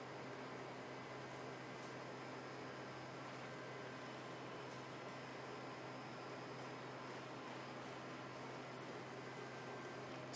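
Faint steady hiss with a low hum underneath and no distinct events: background room tone.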